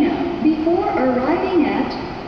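Speech: a woman's recorded voice over the station public address, continuing the English departure announcement that lists the train's stops.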